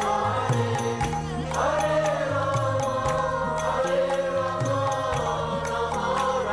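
Group of voices chanting a devotional kirtan melody together, over a steady high percussive beat of about two strikes a second and sustained low accompanying notes.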